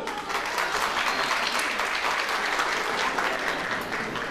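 Audience applauding: many people clapping at once, dying away near the end.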